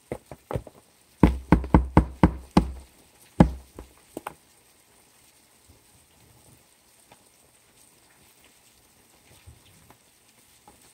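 A quick run of loud knocks and thumps on a plastic tub, about seven in a second and a half with one more just after, as the roach tub is handled; then only faint light ticks.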